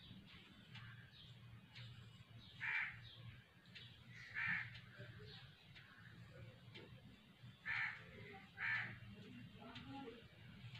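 A bird calling four times in short calls: two a couple of seconds apart, then two more about a second apart near the end, over a faint low hum.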